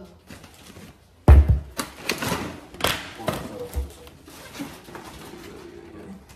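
Groceries being unpacked and put away: a heavy thump about a second in, then irregular clattering and knocking, and another low thump a couple of seconds later.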